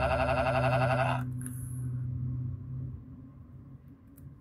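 A loud electronic warbling tone, siren-like, cuts off suddenly about a second in. A low hum is left behind and fades out over the next two seconds.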